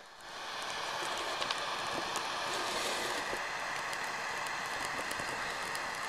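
A hand-held flame jet hissing steadily as it is played on a burning plastic action figure, with a few faint crackles. The hiss builds up over the first half second and cuts off suddenly near the end.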